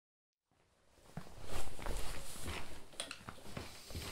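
Irregular rustling and soft knocks of a person shifting about on a sofa while handling a ukulele, starting about half a second in. No notes are played.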